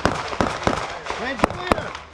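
Gunshots from other shooters on the range: about five sharp cracks, twice in quick pairs, over people talking.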